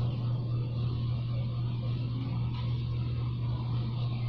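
A steady low hum under a constant background hiss, unchanging throughout.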